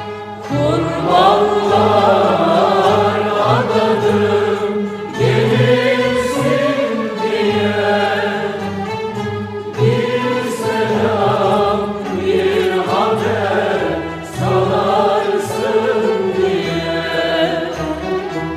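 A woman singing a Turkish art music song in makam Hicaz in long, wavering phrases, over an instrumental ensemble accompaniment.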